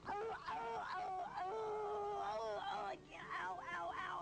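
A woman moaning and wailing in pain, in long wavering cries, then shorter broken ones near the end, after a fall from a grape-stomping platform.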